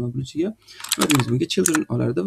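Computer keyboard typing: a quick run of keystrokes about a second in, with talking over it.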